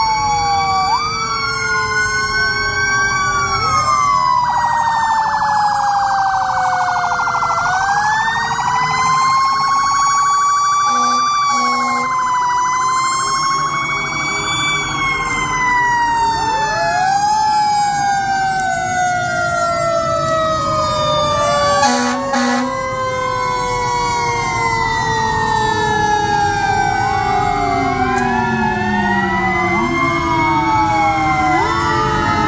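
Several fire truck sirens wailing at once, their pitches rising and falling out of step with each other, with a brief loud blast about two-thirds of the way through.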